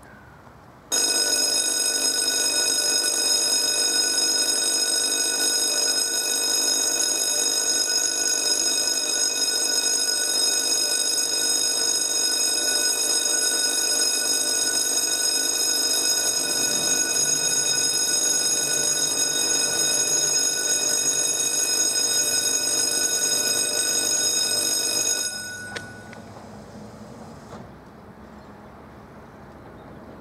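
Level-crossing warning bell ringing steadily, an electronic ringing with many high tones, sounding to warn of an approaching train. It starts about a second in and cuts off suddenly a few seconds before the end.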